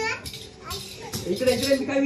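Voices: a young child's voice and people talking, with a drawn-out vocal sound in the second half.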